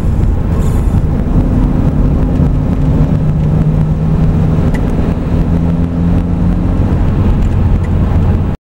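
In-cabin sound of a 1999 Renault Laguna's 1.6-litre 16-valve four-cylinder petrol engine running steadily at moderate revs, around 2,500–3,000 rpm, while the car cruises, with road noise underneath.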